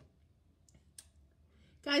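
A quiet pause broken by two faint, short clicks about a second apart, then a woman's voice comes in near the end.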